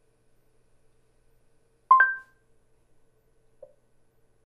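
A short electronic chime from a Google Home Hub smart display about two seconds in: two tones struck together that ring briefly and fade. Near the end a faint soft blip as its volume is set.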